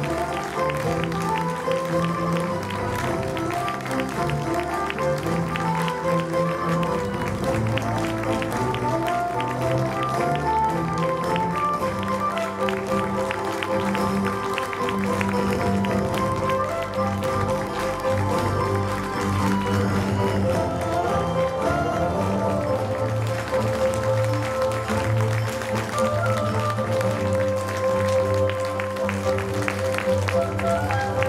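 Music playing over a theatre audience's applause.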